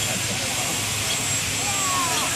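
Steady rushing outdoor noise with faint voices of people nearby.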